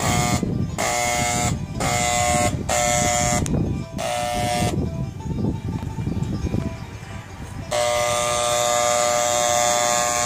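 Handheld electric paint sprayer buzzing in short trigger bursts of about a second each while spraying paint, then running steadily for the last couple of seconds.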